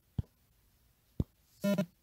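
Two short, sharp knocks about a second apart: handling noise from the phone that is recording.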